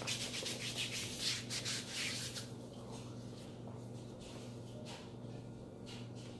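Hands rubbing together, skin on skin, working a beard-care product into the skin. Quick repeated strokes for the first two and a half seconds, then a few slower, fainter rubs.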